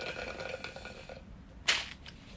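Slurping a drink through a straw from a plastic cup: a gurgling suck that lasts about a second. Near the end comes one brief, loud rush of noise.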